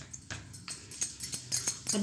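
Wooden rolling pin rolling out folded paratha dough on a round wooden board, with irregular light clicks and knocks.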